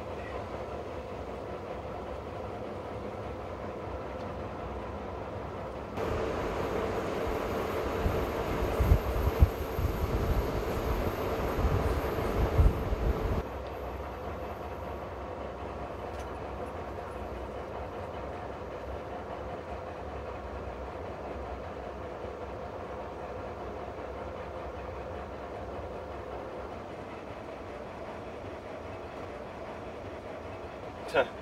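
Narrow-gauge 'Harzkamel' diesel locomotive under way on the track, with a steady engine drone and running noise. From about six seconds in, for some seven seconds, it gets louder with heavy knocking and rattling from the wheels and running gear, then drops back to the steady drone.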